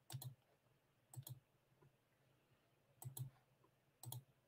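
Faint clicking from a computer being worked: three short pairs of clicks, one at the start, one about a second in and one about three seconds in, over near silence.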